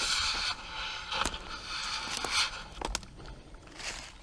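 Footsteps crunching and rustling through dry fallen leaves on a slope, uneven in rhythm, with a few sharp clicks mixed in.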